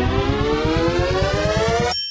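Synthesized intro riser: a tone climbing steadily in pitch over a fast low pulse, which cuts off abruptly near the end into a bright ringing chime as the logo appears.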